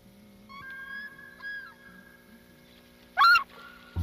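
Bird calls: a few thin whistled calls in the first couple of seconds, then one short, loud, sharp call a little after three seconds in.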